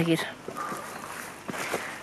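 Footsteps on a hiking trail with rustling from a handheld camera as the walker sets off again, a few light knocks among them.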